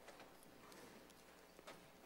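Near silence with a few faint footsteps of children walking on a stone-tiled floor.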